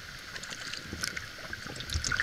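Water trickling and lapping along a wooden cedar canoe's hull as it is paddled, with small splashes and ticks in the noise. There is some low rumble and a dull low thump near the end.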